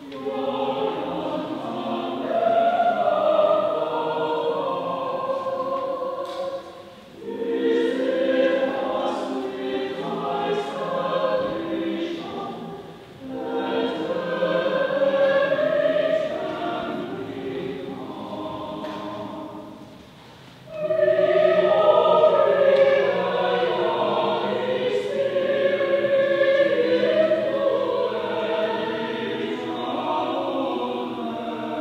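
Choir singing in four phrases, with short breaks between them about 7, 13 and 20 seconds in.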